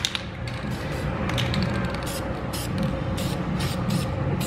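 VHT Nite Shades aerosol spray can hissing as liquid window tint is sprayed onto car window glass, in short repeated bursts from about a second in.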